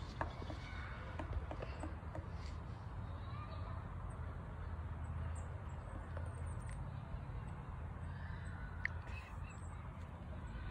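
Outdoor ambience: a steady low rumble, a few light taps in the first couple of seconds, and faint distant voices near the end.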